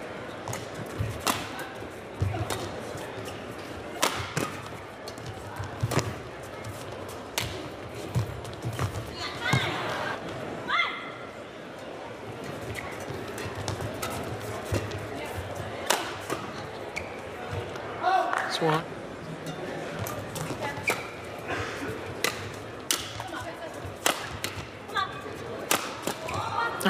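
Badminton rallies: a shuttlecock struck by rackets in sharp, irregular cracks a second or more apart, over the steady noise of an arena crowd.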